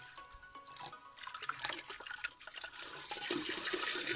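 Water running and splashing in a sink as dirty aquarium filter sponges are rinsed, growing louder from about a second in.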